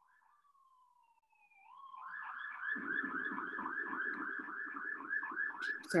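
Emergency-vehicle siren passing. A faint falling wail rises into a rapid yelp from about two seconds in, warbling about four times a second over a low rumble.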